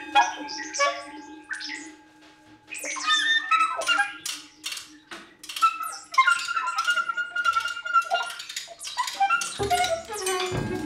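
Free-improvised ensemble music with sharp percussive clicks and taps and short, squawking high tones. A held low tone runs through the first few seconds, and a sustained higher tone enters past the middle. The playing thins out briefly twice.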